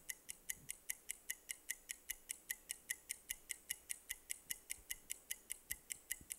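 Game-show countdown timer sound effect: a fast, steady clock-like ticking, several evenly spaced ticks a second, counting down the contestants' time to answer.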